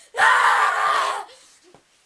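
A person screaming: one high-pitched scream about a second long, starting just after the beginning and trailing off.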